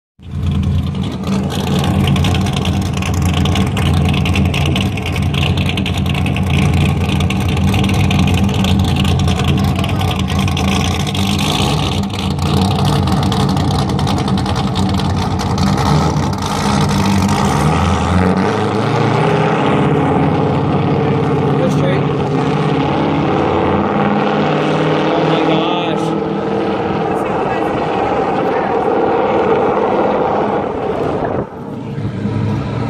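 Car engine idling with a deep, steady rumble, then revving up about 18 seconds in and holding a higher, steady note as the car drives off.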